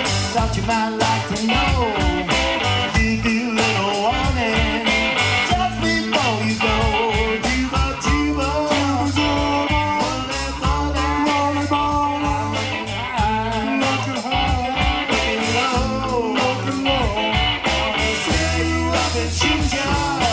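Live blues-rock band playing: electric guitars with a bending lead line over bass and a steady drum beat.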